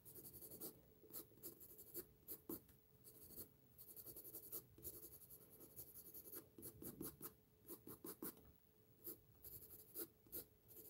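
Faint scratching of a graphite pencil on drawing paper in many quick, short strokes, with a few longer spells of continuous shading, as feather texture is worked into a drawn wing.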